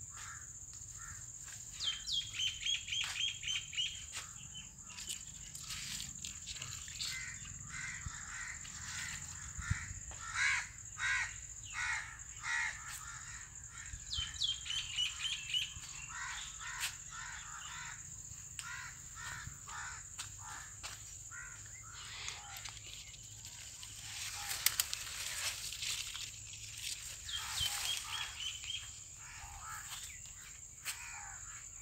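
Birds calling, one phrase repeating about every twelve seconds: a quick rising note followed by a fast run of short notes, with other scattered calls in between. Under them runs a steady high-pitched drone of insects.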